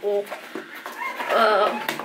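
A young rooster (cockerel) crowing once, a single wavering call of about a second that starts around a second in.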